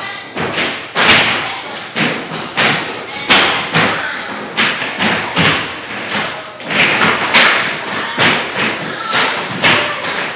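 A group of young children's tap shoes striking a wooden studio floor, a loose, unsynchronised run of sharp taps about two to three a second, with the studio's echo after each.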